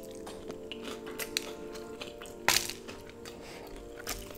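Crunchy chewing of a Flamin' Hot Cheetos-crusted fried chicken drumstick, a scatter of short crisp crunches with the loudest about two and a half seconds in, over steady background music.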